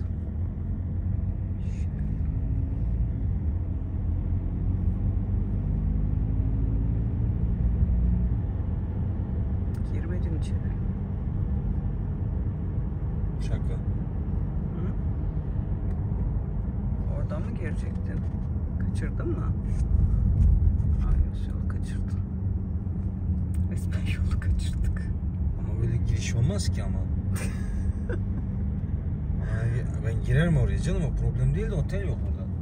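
Steady low rumble of road and engine noise inside a moving car's cabin on a motorway, with scattered short higher sounds over it in the second half.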